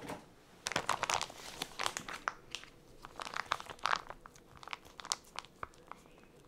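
Plastic Ziploc zipper bags filled with soft koji paste crinkling as they are handled and pressed. The crackles come in a quick, irregular run, with short pauses between clusters.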